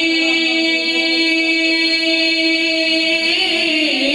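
A young man singing unaccompanied into a microphone, holding one long steady note for about three seconds before the pitch wavers and dips near the end.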